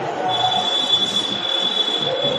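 A steady high-pitched whine holding one pitch, starting just after the beginning.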